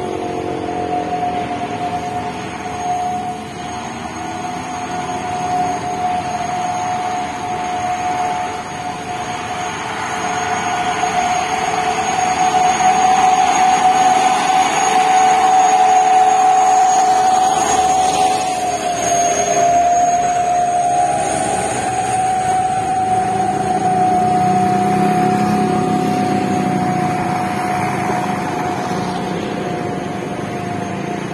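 Diesel trucks labouring up a steep grade, with a steady high whine over the engine noise that swells as a truck passes in the middle. A deeper, heavier truck engine comes up in the later part.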